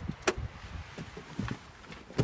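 Someone climbing into a car: a sharp click about a quarter second in, then soft knocks and rustling of handling and movement in the seat.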